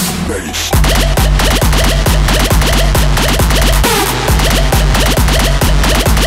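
Electronic dance music mixed live on Technics 1200 turntables with Serato control vinyl, with scratching on the record. After a short thin break, a loud beat with a heavy bass kick drops in just under a second in and runs on.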